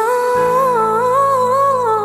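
Closing bars of a gospel song: a female voice hums a wordless melody that steps up and down, over a sustained low chord that comes in about a third of a second in.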